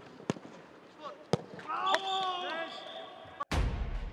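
Football training: a ball is kicked with three sharp thuds, and a couple of players shout calls about two seconds in. About half a second before the end, a loud, deep electronic sound effect cuts in suddenly.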